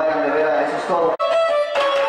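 A voice over live dance-band music, broken by a sudden instant of silence about a second in, after which the band's music carries on with sustained notes and guitar.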